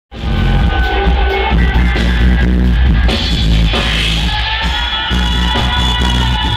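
Reggae band playing live, with a strong bass line under drums and guitar. The music cuts in abruptly, mid-song.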